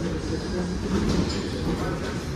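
Steady low rumble of a busy thrift-store floor, with clothes rustling as they are handled in a bin and a brief scratchy clatter about a second in.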